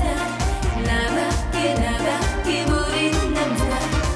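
Korean trot song: a woman singing lead vocals over an upbeat dance-pop backing with a steady kick drum, about two beats a second.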